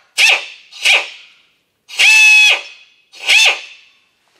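Pneumatic air drill driving a right-angle tight-fit drill attachment, run in four short trigger bursts of whine and air hiss, the third held for about half a second. The drill is set in reverse, so the bit does not cut.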